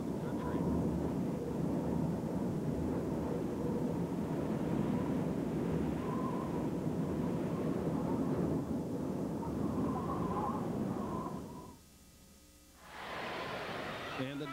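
Storm wind blowing steadily, with a faint whistle coming and going. It cuts out for about a second near the end, then a brighter rush of noise comes back.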